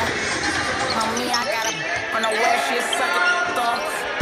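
Live sound from a basketball court in a large arena: several indistinct players' voices and calls over a bouncing basketball.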